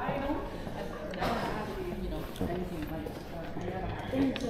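Indistinct voices of people talking in a large lobby, with footsteps on a hard floor.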